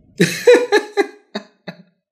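A man laughing in a quick run of short, sharp bursts that start loud and trail off.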